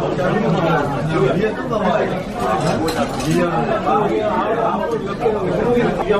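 Several people talking at once in a busy restaurant dining room, with a few light clinks of tableware around the middle.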